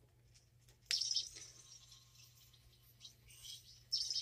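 Toy sonic screwdriver giving two short bursts of its high electronic warble, about a second in and again near the end, with near silence between.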